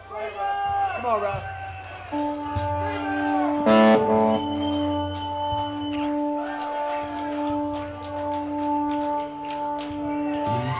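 A keyboard holds one steady organ-like note from about two seconds in, with a brief louder chord about four seconds in, over crowd voices.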